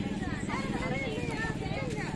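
People's voices talking in the background over a steady low rumble with a rapid fine pulsing.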